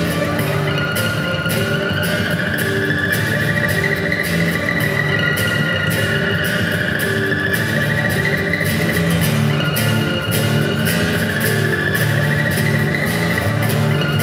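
Acoustic guitar played fingerstyle, a wordless passage of plucked notes with regular percussive hits. Above it, a high tone slowly slides up and then back down.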